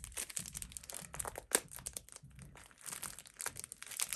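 Packaging crinkling and crackling irregularly as it is wrestled open to free a pack of small business-card-size cards.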